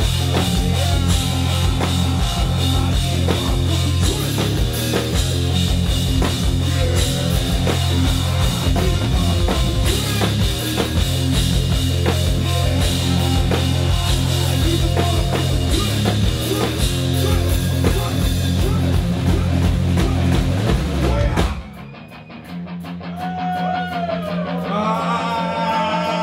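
Live rock band playing a loud instrumental passage on drum kit, electric guitar and bass. The band cuts out suddenly about three seconds before the end, leaving a quieter low held note with a few sliding higher notes.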